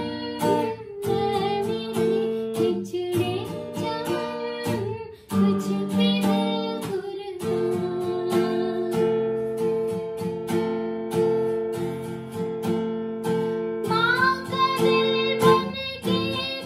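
Cutaway acoustic guitar strummed in a steady rhythm, its chords ringing on between the strokes. A woman's singing voice comes in near the end.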